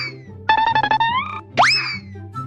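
Cartoon-style comedy sound effects over a backing music track: a quick upward swoop like a boing, then a rapid run of short plucked notes climbing in pitch, then the same swoop again near the end.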